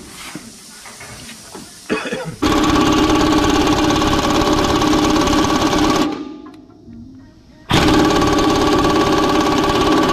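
AIRCAT pneumatic impact wrench hammering on a Hendrickson suspension pivot bolt nut: a quieter clatter, then a long loud burst starting about two seconds in that trails off, and a second burst starting abruptly near the end.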